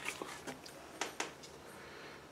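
Faint handling of a cardboard board book by hand: light rubbing and a few soft clicks, with two sharper clicks about a second in.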